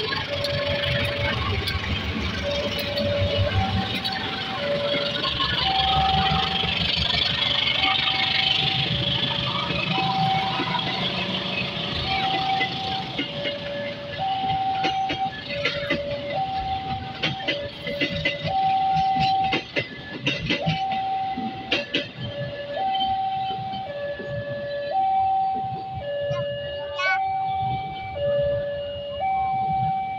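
Railway level-crossing warning alarm sounding its two-tone chime, an even alternation of a lower and a higher note, each held under a second, while a passenger train hauled by a diesel locomotive rumbles past, its wheels clicking over the rail joints. The train noise fades through the second half, leaving the crossing alarm plainest.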